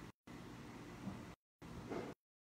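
Faint steady hiss of background noise that cuts in and out abruptly, dropping to dead silence twice.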